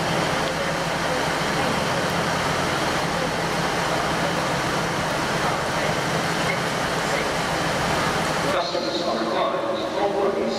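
Steam locomotive blowing off steam: a loud, steady hiss with a low hum beneath, which cuts off suddenly near the end.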